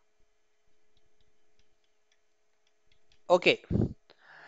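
Near silence with a faint steady hum and a few faint, irregular clicks, then a man says a short 'ok' near the end.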